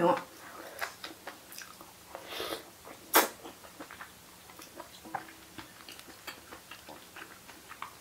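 A person slurping rice noodles in broth and chewing them: a short slurp about two and a half seconds in, a louder sharp sound just after, then soft chewing clicks.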